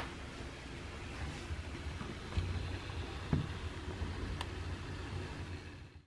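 A LEGO Mindstorms EV3 robot driving itself along a line-following track: a low steady rumble of its motors and wheels with a few faint clicks, fading out near the end.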